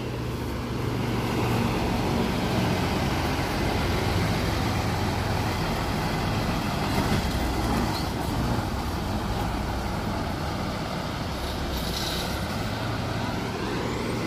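Intercity bus's diesel engine running as the coach drives slowly past, growing louder as it nears and easing as it pulls away. A short hiss comes near the end.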